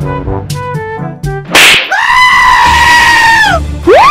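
Cartoon background music, then a sudden loud noisy hit about a second and a half in, followed by a long, high cartoon monster scream that drops in pitch as it ends. A rising cry begins right at the end.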